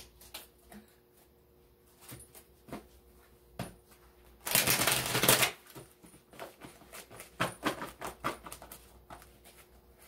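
A deck of oracle cards being handled and shuffled: scattered light taps and clicks, a dense shuffling rustle of about a second near the middle, then a quick cluster of card snaps and taps.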